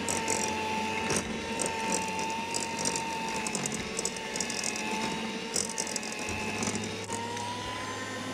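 Electric hand mixer running steadily, its beaters creaming butter and sugar, with a steady motor whine and scattered clicks of the beaters against the bowl. The whine rises slightly in pitch near the end.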